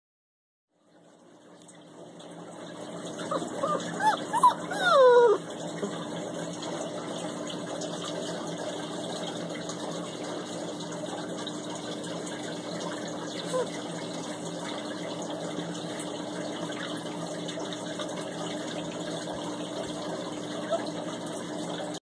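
Great Dane puppy whining for attention: a quick run of high whines that bend up and down, ending in a longer, louder whine that falls in pitch about five seconds in. A steady hum runs underneath.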